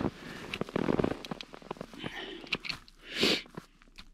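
Handling noise from a small plastic battery-powered camping lantern being fitted together: a run of small clicks and crackles, with a short rustle about three seconds in.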